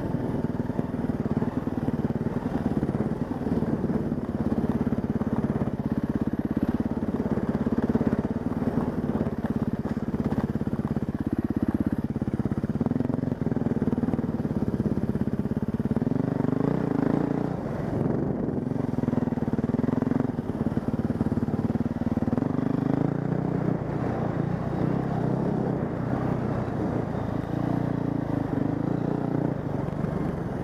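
Husqvarna dirt bike engine running as it is ridden, its pitch stepping up and down several times with throttle and gear changes.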